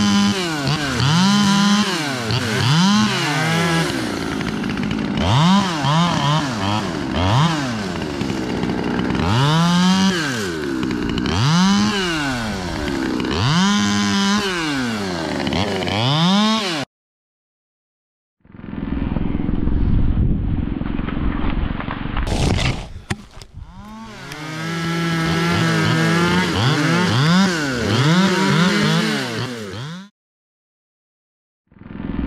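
Two-stroke chainsaw cutting through the limbs of a felled conifer: revs climb and fall again and again with each cut, settling back to a steady idle between cuts. Partway through the sound cuts out briefly, then there is a low rumble with a few clicks before the saw is heard revving through cuts again.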